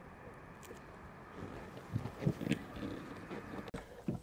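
Faint handling noises, rubbing and a few light clicks, as the plastic inner frame of a roof window is pushed into place in the ceiling opening, starting about a second and a half in.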